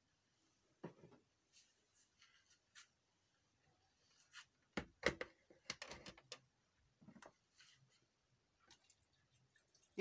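Sparse, faint clicks and knocks of a plastic blender jar being handled and set onto its motor base, with a cluster of sharper knocks about five to six seconds in. The blender motor is not running.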